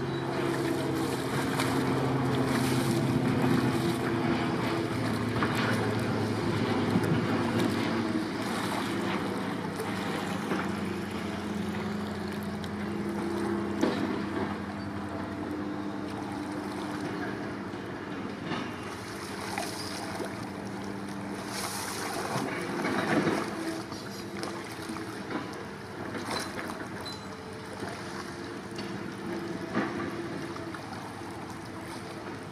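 Paddle blades of a surfski dipping and splashing in calm water, stroke after stroke, with wind on the microphone. Under it runs a steady low droning hum whose pitch shifts now and then.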